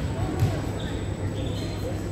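Spectators' chatter echoing in a school gymnasium, with two dull thumps on the wooden floor about half a second apart.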